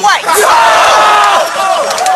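A crowd of people shouting and whooping together in a loud reaction to an insult punchline, swelling just after the start and easing off after about a second and a half.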